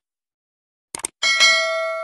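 Two quick mouse clicks about a second in, then a bell ding that rings on and slowly fades. It is the sound effect of a subscribe button and notification bell being pressed.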